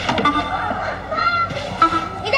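High-pitched shouting voices, probably children calling from the game, over background music; the shouts come in the second half.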